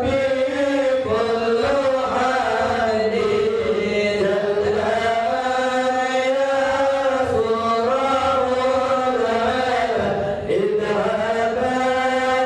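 Men's voices chanting an Islamic devotional hymn together in long, drawn-out melodic lines. There is a brief drop about ten and a half seconds in.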